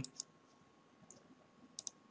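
Computer mouse clicks: a single click just after the start and a quick pair of clicks near the end.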